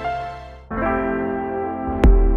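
Instrumental music break played on a keyboard: a note fades away, then a chord is struck about two-thirds of a second in and held.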